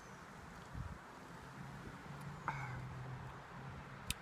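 A man quietly drinking beer, with faint swallowing sounds. A low, steady engine hum from a passing vehicle comes in about halfway through.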